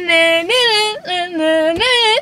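A woman's voice singing a pop song line in long held notes that waver in pitch, with a short break between phrases about a second in.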